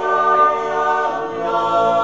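Background choral music: voices singing sustained chords without instruments, moving to a new chord a little past halfway.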